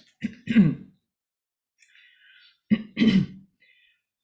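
A person clearing their throat twice, two short bursts falling in pitch, the second about two and a half seconds after the first.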